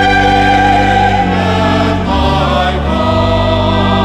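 Mixed choir singing a hymn in parts, accompanied by an electric keyboard playing held chords that change about once a second.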